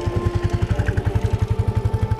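Small motorcycle engine running as the bike pulls away, its exhaust beating in a steady, rapid pulse of about a dozen beats a second.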